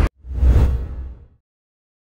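Whoosh sound effect of an outro transition, with a deep low end: it swells up right after an abrupt cut, peaks around half a second in and fades away over the next second.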